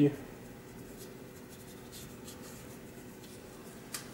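Faint scratching of a paintbrush laying oil paint onto PVA-primed cardboard, in several short strokes.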